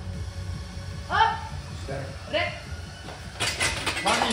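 Onlookers give two short shouts of encouragement during a barbell back squat, then clapping and cheering break out near the end as the lift is completed, over background music with a steady low beat.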